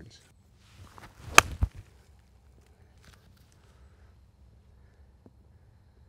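A golf wedge striking the ball on an approach shot of about 86 yards: one sharp click about a second and a half in, with a dull thump just after it.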